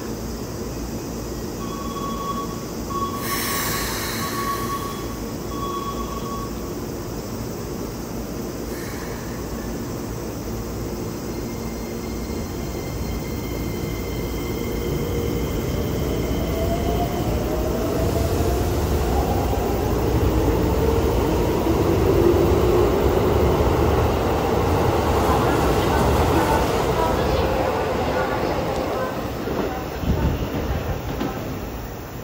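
Keikyu New 1000 series electric train pulling away from the platform. A steady hum runs while it stands, with a brief repeating beep a few seconds in. Then the motors' whine rises in pitch as the train speeds up, growing louder as the cars run past.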